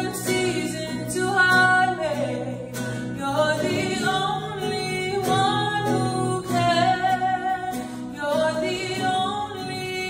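A woman singing solo with sustained, bending notes, accompanied by a strummed acoustic guitar.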